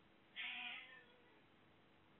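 A domestic cat meowing once, a short call of about half a second coming about half a second in.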